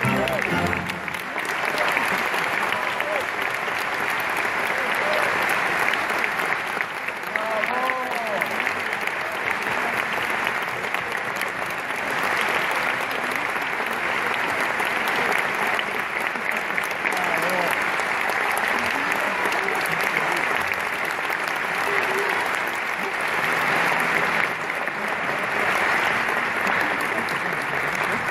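Audience applauding steadily after an operatic performance, a dense sustained clapping with a few voices calling out over it.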